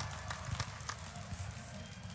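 Quiet arena ambience with scattered light taps and clicks.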